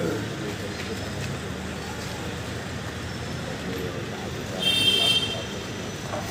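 Steady outdoor traffic noise with a low rumble, and a brief high-pitched vehicle horn toot about five seconds in.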